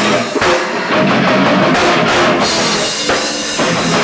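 Hardcore punk band playing live: drum kit pounding under loud electric guitar and bass.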